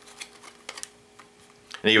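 A few light, sharp clicks and taps from a fishing lure's plastic package being handled, over a faint steady hum.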